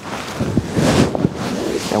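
Gi cloth rustling and rubbing against a clip-on microphone as the grapplers shift their grips and bodies on the mat, a continuous rustle.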